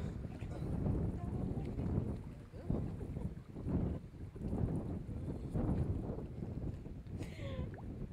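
Wind buffeting the camera microphone, a low gusty rumble throughout. Near the end a woman lets out a brief high-pitched excited cry.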